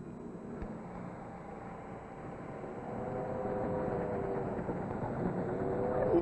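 Train sound effect: the rumble of a moving railway carriage fades in and grows louder in the second half, with steady held tones over it.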